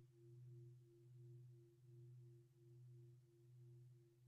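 Near silence with a faint, steady low hum that swells and fades slightly a little more than once a second.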